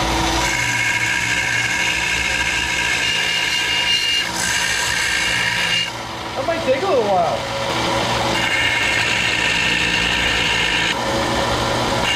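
Vertical bandsaw running, its blade grinding against a painted bracket in two spells of cutting with a lull around the middle. The cut makes little headway: 'that's not working'.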